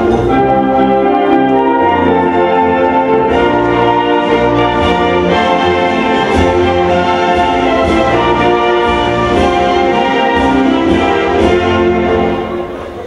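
A national anthem played from a recording by a full orchestra, with the brass section prominent in sustained chords.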